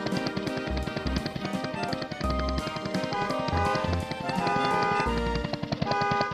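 Background music: an upbeat tune with a steady drum beat and bass.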